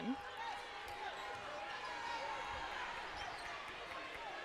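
Ambience of a sparsely filled indoor basketball arena: faint, echoing voices of players and spectators blend into a steady murmur, with no single sound standing out.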